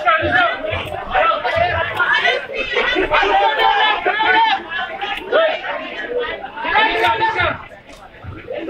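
Several people talking and calling out at once, a loud chatter of overlapping voices, easing off just before the end.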